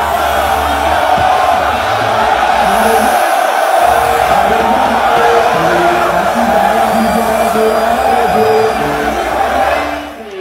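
Loud live concert music with a big crowd cheering, whooping and singing along over it. The bass drops out briefly a little over three seconds in.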